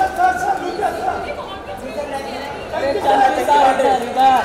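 Many voices talking over one another: the chatter of a crowd of press photographers calling out to the people posing.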